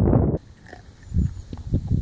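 A dog chewing and tugging at a raw baby goat carcass, giving a few short, low chewing sounds between about one and two seconds in. Wind rumbling on the microphone covers the first third of a second and cuts off abruptly.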